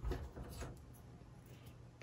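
Small plywood model-kit parts being handled on a cutting mat: a soft knock at the start, then two fainter clicks within the first second.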